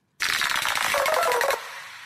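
A short radio-show sound-effect stinger: a loud, rapid rattling burst with a few tones over it that holds for about a second and a half and then fades. It marks the start of the 'expression of the day' segment.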